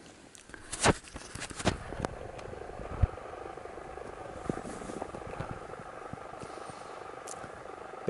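Knocks and rustles from the camera being handled in the first two seconds, then a steady soft hiss with a few faint ticks as a man draws on a pipe close to the microphone.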